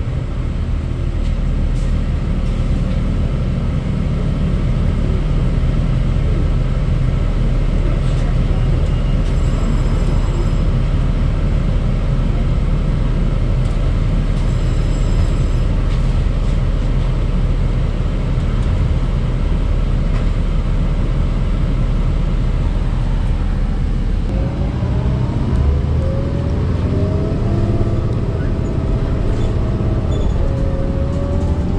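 Heard inside the cabin: the Cummins ISL diesel of a 2008 New Flyer D40LFR bus idling steadily while the bus stands. About 24 seconds in, the bus pulls away and the engine note rises in pitch, drops back and climbs again as the Allison automatic transmission shifts up.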